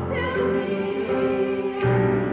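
Mixed-voice choir singing in harmony, with a new phrase and lower voices coming in near the end.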